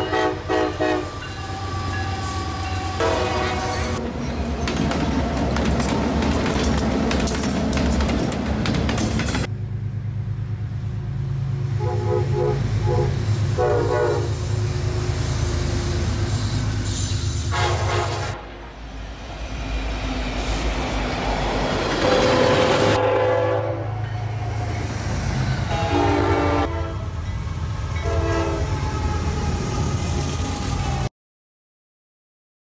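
Diesel locomotives passing close by, their engines droning low under repeated blasts of multi-note air horns, with wheel clatter on the rails. The sound changes abruptly several times as it jumps from one passing train to another.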